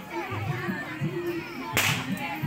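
Background music with a steady low beat and voices, cut through near the end by one sharp crack.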